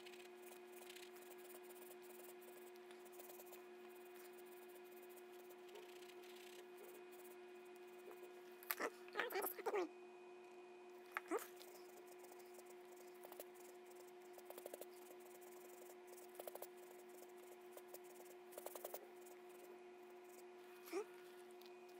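A faint steady hum with a handful of short squeaks and small handling noises from painting tools and gloved hands at work. The main squeaks come as a cluster about nine seconds in, with a single falling squeak just after eleven seconds.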